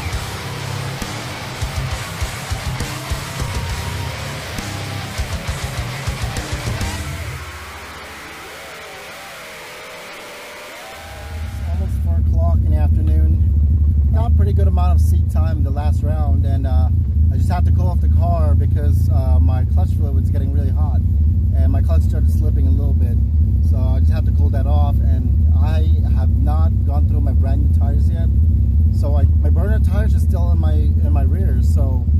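Heavy-metal electric guitar music that fades out by about eight seconds in. After a short lull, a Mazda RX-7's 13B rotary engine idles with a steady low drone, heard from inside the cabin, with a man talking over it.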